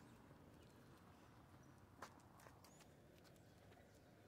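Near silence with faint, irregular clicking of dogs' claws on paving stones, and one sharper click about two seconds in.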